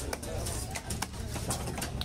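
Busy fish-market background of voices with pigeons cooing, broken by several sharp knocks spread through the two seconds.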